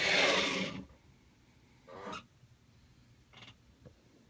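Plastic action figures being picked up and slid across a tabletop by hand: a brief rubbing scrape at the start, then two faint handling sounds later on.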